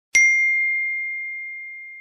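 A single bell-like ding struck once, ringing as one high, clear tone that slowly fades away.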